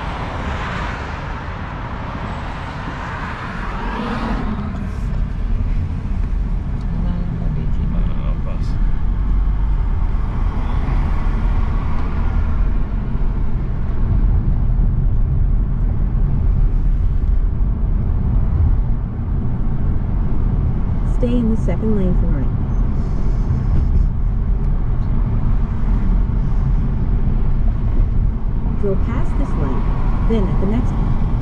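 Road and engine noise heard inside a moving car: a steady low rumble that grows louder over the first half as the car gathers speed, then holds.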